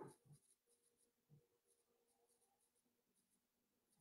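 Near silence: room tone with a few faint soft knocks near the start and scattered faint ticks.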